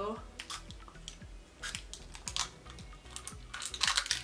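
Several short, sharp hissing spritzes and clicks from a small pump-action candy mouth spray being sprayed into the mouth, spread through the few seconds.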